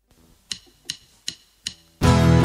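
A count-in of four evenly spaced clicks, about two and a half a second, setting the tempo for the song that follows.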